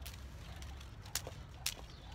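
Skipping rope swung in side swings, its cord slapping the concrete with sharp ticks, two clear ones about half a second apart in the second half, over a low steady rumble.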